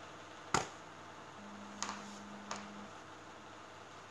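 A few faint clicks in a quiet room: one sharp click about half a second in, two softer ones later, with a low steady hum for about a second and a half in the middle.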